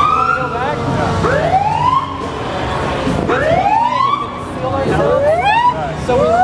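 Emergency-vehicle siren sounding in repeated rising sweeps, each climbing in pitch and then dropping back to start again, about every two seconds, over the noise of a crowd.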